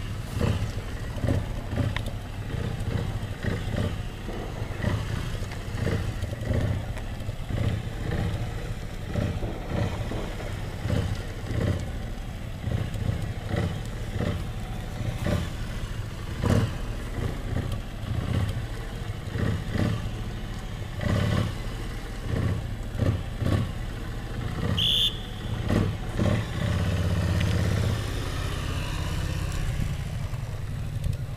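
Motorcycle engine at low speed, its note swelling and falling in many short, uneven pulses as the throttle is worked through slow cone weaving. Near the end it pulls more steadily and louder for a couple of seconds.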